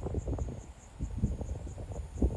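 A cricket chirping in a steady high pulse about four times a second, over a low, irregular rumble.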